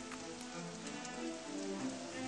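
Quiet track intro: the hiss and patter of a rain sound effect over slow, sustained melodic music notes.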